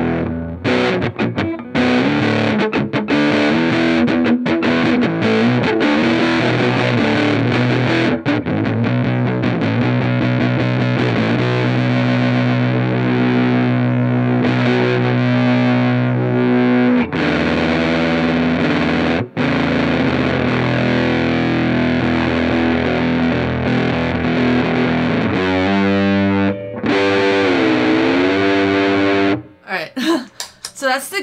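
Music Man Stingray RS electric guitar played through a distortion effect: chords and riffs broken by a few short stops, with a long held chord in the middle. Near the end a note is bent and wobbled with vibrato, and the playing cuts off just before the end.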